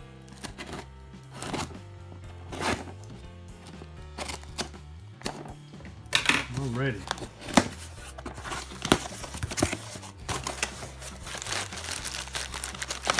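Cardboard shipping box being cut open with a box cutter: short scraping strokes as the blade slits the packing tape and the box is handled. Near the end, crumpled paper packing rustles as hands dig into the box.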